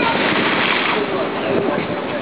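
A big wave breaking against a sea wall: a loud rush of surf and spray that eases off about a second in.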